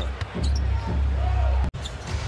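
Arena sound from a basketball game broadcast: crowd noise and court sounds over a steady low rumble. It cuts off abruptly near the end at an edit.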